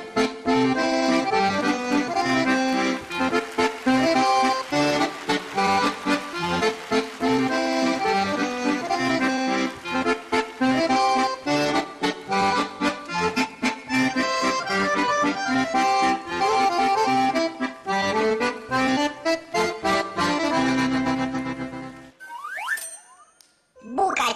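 Garmon (Russian button accordion) playing a lively folk tune with rhythmic chord stabs; the music stops about two seconds before the end, followed by a brief rising glide.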